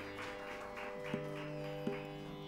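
Tanpura (tambura) drone: steady sustained pitches with a buzzing shimmer that pulses as the strings are plucked in turn. Two short light taps sound, one a little past a second in and one near the end, the first bringing in a low held note.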